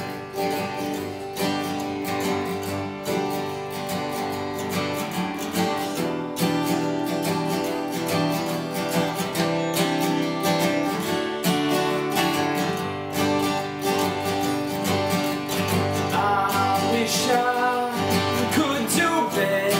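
Two steel-string acoustic guitars playing the song's intro together, strummed chords in a steady rhythm. A voice begins singing over them near the end.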